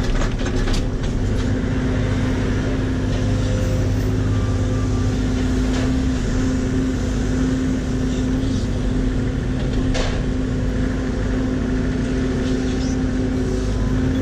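John Deere 85G mini excavator's diesel engine running steadily at working speed while the hydraulics move the boom and bucket, heard from inside the cab. A few brief knocks, twice, stand out over the steady engine hum.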